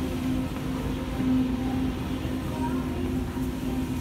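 A steady low hum, briefly broken now and then, over a continuous rumbling noise.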